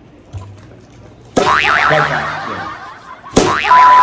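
Comedy sound effects: a wavering, sliding tone starting suddenly about a second and a half in, then a sudden loud hit and a steady high beep near the end.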